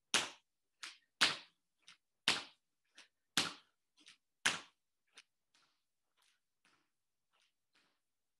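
Feet in shoes landing squat jumps on a hard wood-effect floor: five sharp thuds about a second apart, each with a softer tap just before it, then only faint taps near the end.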